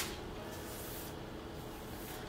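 Faint, even rustle of a hand working through long curly wig hair that has just been sprayed damp.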